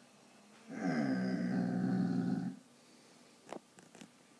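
A basset hound gives one low, drawn-out howl lasting about two seconds, its pitch dipping at the start and then held steady. This is the howl of a dog missing its owner who has gone out. Two faint clicks follow near the end.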